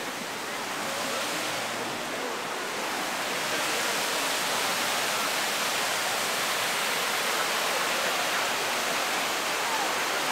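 Rushing white water of river rapids, a steady even rush that grows louder over the first few seconds and then holds level.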